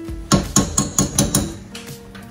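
Metal teaspoon tapped against a saucepan, about six quick clinks in a little over a second.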